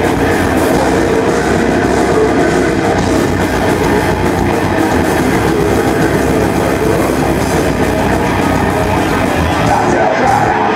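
A metal band playing live, led by electric guitar and bass, in a loud, dense instrumental passage without vocals.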